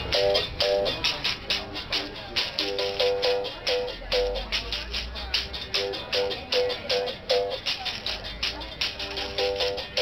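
Berimbau played with a stick and a caxixi basket rattle: a quick, steady rhythm of stick strikes on the wire with the rattle's shake, broken into short phrases of ringing, gourd-resonated notes.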